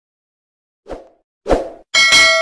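Two short pop sound effects, about a second in and again half a second later, as animated subscribe-screen buttons pop onto a channel end card.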